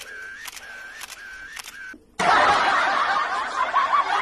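Edited-in sound effects: a repeating pattern of a click followed by a short tone, about two a second, which stops about two seconds in. After a brief gap comes a sudden, loud, dense, noisy sound, louder than the clicks.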